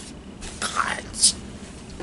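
A woman's soft whispered voice: two short breathy sounds, the first about half a second in and a higher, brief one a little after a second.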